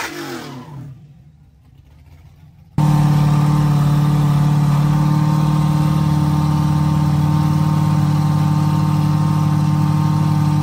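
The end of a burnout dying away, then, after about two seconds of near quiet, a C7 Corvette's V8 held at a constant rpm on the drag-strip starting line. It makes a loud, unchanging drone from about three seconds in.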